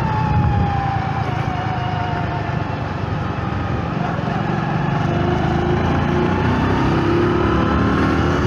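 Small motorcycle engine running on the move, with a steady rush of air and road noise. Its pitch sags through the first half, then climbs steadily as the bike accelerates.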